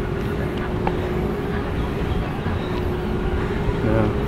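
A distant engine's steady low rumble with a faint constant hum.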